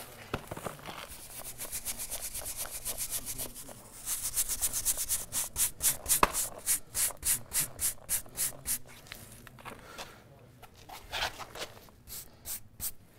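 A hand brush scrubbing the face of thin brick to clear smeared mortar, in rapid back-and-forth strokes several a second. It pauses briefly just before four seconds in and dies away after about nine seconds.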